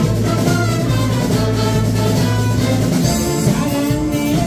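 Live big band with saxophones, brass, drum kit and bass playing a Korean trot song, with a held low bass note through the first three seconds.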